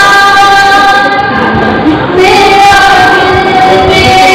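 A woman singing solo into a microphone, holding long sustained notes, with a brief break about halfway through.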